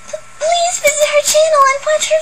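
A very high-pitched young woman's voice speaking Japanese in a cute anime style. It gives a short stammered start, then one continuous line.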